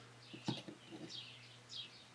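A bird chirping faintly in the background: a quick run of short chirps, each falling in pitch, about three or four a second. A light click comes about half a second in.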